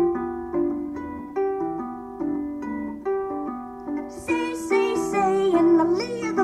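Solo harp playing a plucked instrumental passage, single notes ringing out one after another at an even pace. From about four seconds in the playing becomes fuller and brighter, with more notes sounding together.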